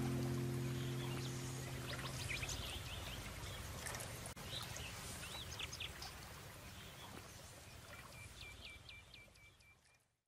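The last chord of an acoustic cover song rings out and dies away over the first few seconds. Then faint outdoor ambience is left: birds chirping over a soft steady rushing noise, with a quick run of chirps near the end, before it all fades to silence.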